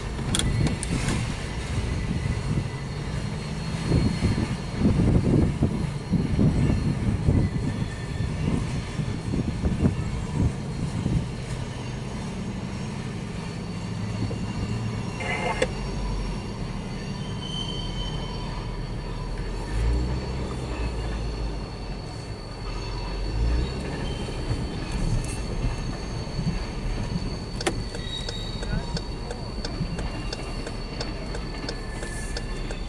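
Freight train cars rolling past a grade crossing, heard from inside a waiting car: wheels clattering over the rails, loudest in the first ten seconds or so. After that the sound settles to a lower, steadier rumble.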